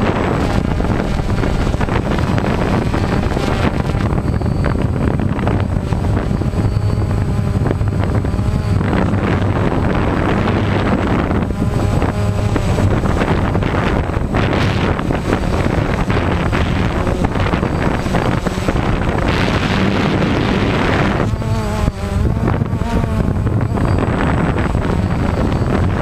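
DJI Phantom quadcopter's motors and propellers buzzing steadily, recorded by the camera on board, with wind rushing over the microphone. The pitch wavers up and down as the motors change speed, most clearly about a quarter of the way in and again near the end.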